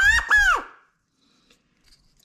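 A quail stick call with a number 33 rubber-band reed, blown once as a tone test after its reed tension has been adjusted. At the very start it gives two quick high notes, the second sliding down in pitch.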